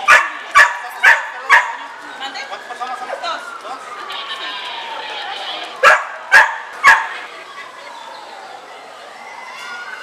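A dog barks loudly in two bursts, four barks at the start and three more about six seconds in. Beneath the barks, a tsunami warning siren wails, rising and falling slowly in pitch.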